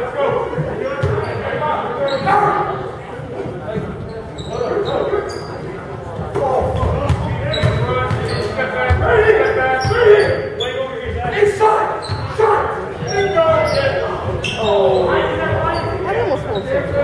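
Basketball game play in a large, echoing gym: the ball dribbling on the hardwood and sneakers squeaking, with players and spectators shouting and talking throughout.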